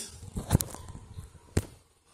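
Two short sharp clicks about a second apart, with faint handling rustle, from hands working on parts inside an open desktop PC case.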